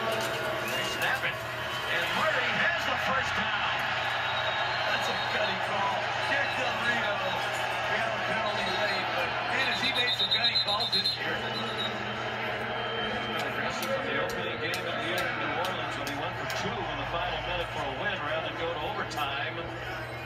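Stadium crowd cheering, a steady dense din of many voices, heard through a television's speaker.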